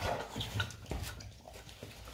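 American bully dog licking and lapping broth from a ceramic bowl: a few short wet clicks of tongue against the bowl.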